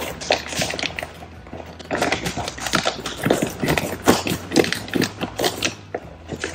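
Clear plastic bag crinkling and rustling as it is cut open with scissors and handled, in many quick, irregular crackles.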